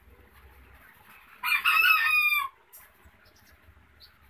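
A rooster crowing once: a single call of about a second, starting about one and a half seconds in and falling slightly in pitch at the end.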